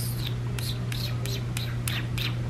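A person calling a cat with a quick run of short whispered "ps" sounds, about seven in two seconds, over a steady low hum.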